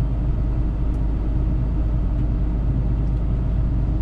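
Truck engine and road noise heard from inside the cab while cruising: a steady low rumble, the truck running unladen.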